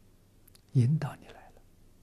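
An elderly man's voice speaking one short Mandarin phrase about three-quarters of a second in, with faint room tone around it.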